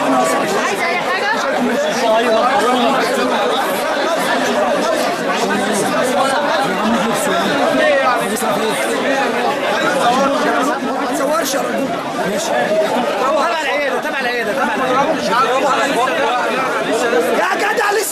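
Many people talking at once in a crowded room: overlapping, unintelligible chatter with no single voice standing out.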